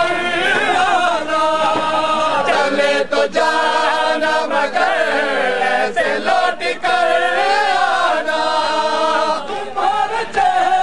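Men's voices chanting an Urdu nauha, a Shia lament for Ali Asghar, in a slow, sustained mournful melody that sounds like many voices together.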